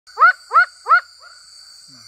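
Tree frog calling three loud, quick notes about a third of a second apart, each a short note that rises and falls in pitch, followed by a fainter fourth note. A steady high-pitched insect drone runs underneath.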